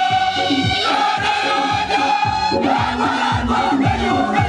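A large church choir of many voices singing together, over a steady low beat about twice a second.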